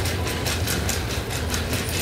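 Shopping cart being pushed across a tiled store floor: a steady wheel rumble with a quick, uneven rattle from the wire basket.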